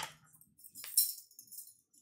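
Granulated sugar rattling in a plastic container as it is handled, a short dry shaking rattle about a second in.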